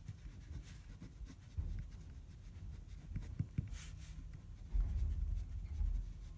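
Pen writing on paper: a run of short, irregular strokes with soft low rubbing as the hand moves across the sheet.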